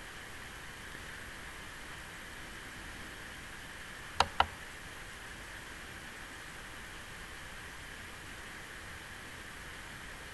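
Steady faint hiss of recording background noise, with two sharp computer-mouse clicks about four seconds in, a quarter second apart, advancing the slideshow to the next slide.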